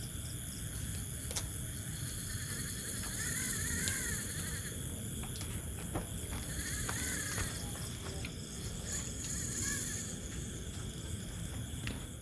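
Crickets and other night insects chirping steadily in several high-pitched tones, with three short rising-and-falling calls from some other animal spread through the middle and a few faint clicks.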